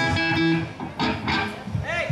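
Live rock band with electric guitar: a held note cuts off about half a second in, followed by a man's voice over the stage microphone.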